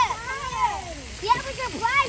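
Children's high-pitched voices calling out and shouting excitedly, with sharp swooping rises and falls in pitch.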